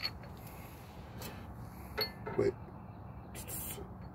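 A few light clicks and clinks of a suspension trailing arm and its bolts being handled and fitted, three sharp ones spaced about a second apart, the last with a brief ring.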